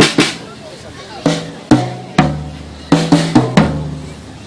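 Acoustic drum kit played with sticks: a few spaced strokes, then a fast fill of about five hits in the last second or so, the toms ringing on after each stroke.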